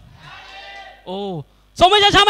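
A man's amplified voice through a handheld microphone: faint talk, then a short drawn vowel sound of under half a second whose pitch rises and falls, and speech starting again near the end.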